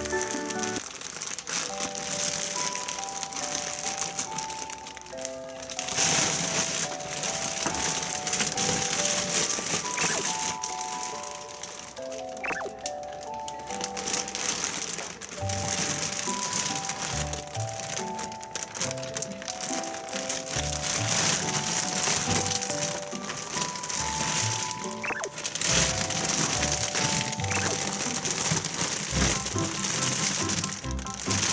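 Background music with a simple plinking melody, over the crinkling of plastic packaging and plastic bags being handled and crawled on by toddlers.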